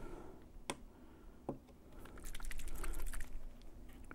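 Fingers picking at the plastic wrapper seal on the neck of a small plastic flavour bottle: two sharp clicks, then a quick run of small crackling clicks as the wrapper resists tearing.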